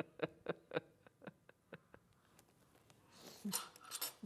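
A quick, even run of light clicks or taps, about four a second, fading out over the first two seconds, then a brief soft rustle near the end.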